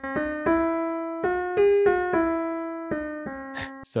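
Modelled Steinway D concert grand in Pianoteq, retuned in quarter tones, plays a scale one note at a time up about five steps and back down, each note left to ring. The scale is rooted a quarter tone above C, and every note is a quarter tone off except the third, which sounds the oddest.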